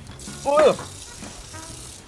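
A man's short vocal murmur about half a second in, over a steady hiss that starts suddenly at the beginning.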